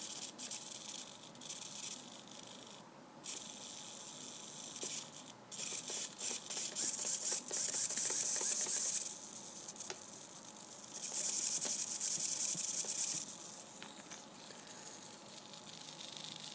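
Hobby micro servo jittering and vibrating noisily in spurts, its small motor and plastic gears chattering, with two longer sustained stretches of noise about eight and eleven seconds in. It cannot hold centre, which the owner suspects comes from powering it with a 6.1 V pack above its working voltage.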